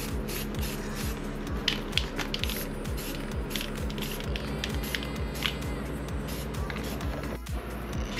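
Aerosol spray-paint can hissing in several short bursts as white paint goes onto alloy wheels, over background music with a steady beat.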